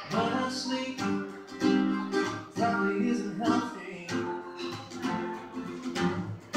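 Acoustic guitar strummed, chords ringing between repeated strokes, as part of a live song.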